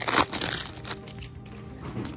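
Foil Pokémon booster-pack wrapper crinkling as it is torn open, loudest in the first half second, then softer rustling.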